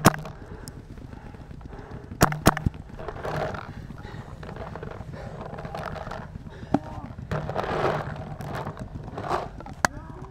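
Paintball marker shots: a quick burst of two or three sharp pops about two seconds in, then single pops later on. Distant voices can be heard in between.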